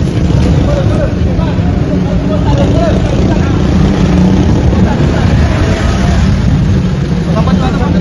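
Pickup truck's engine running close by, a loud steady drone, with men's voices talking and calling over it.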